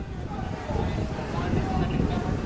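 Busy city street ambience: a steady low rumble with indistinct voices of people talking nearby, none of it clear speech.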